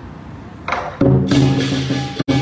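Lion dance percussion music starting loudly about a second in: drum beats with ringing cymbals, over a low background murmur beforehand.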